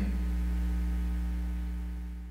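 Steady electrical mains hum on the recording, a low drone with a few fainter higher tones, growing quieter near the end as the sound fades out.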